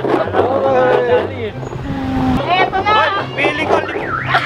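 People talking over a steady low hum, with a short steady tone about two seconds in.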